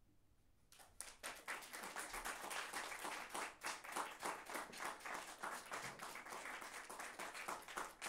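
Audience applause that starts sharply under a second in, after near silence, and keeps going as dense, steady clapping.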